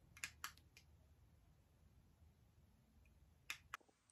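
Near silence: room tone with a few faint short clicks, a pair near the start and another pair near the end.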